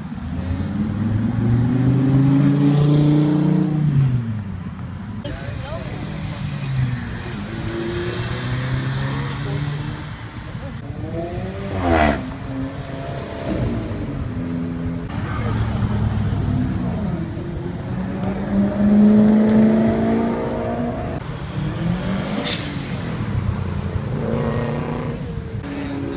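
Sports cars, among them a V10 Dodge Viper and an Alfa Romeo 4C, accelerating past one after another with engines revving up through the gears. There are two sharp cracks, about halfway through and near the end.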